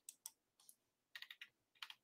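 Faint, quick clicks of computer controls being worked: a couple near the start, a small run in the middle and two more near the end, as the on-screen slides are scrolled.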